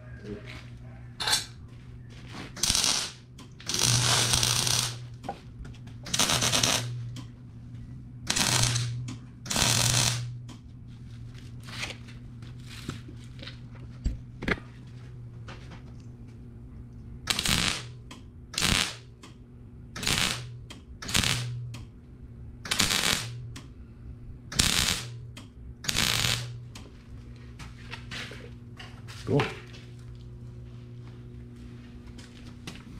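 Wire-feed (MIG) welder laying about fifteen short tack welds, each a crackling burst from a fraction of a second to about a second long, with pauses between, as new tooth pockets are tacked onto an auger flight. A steady low hum runs underneath.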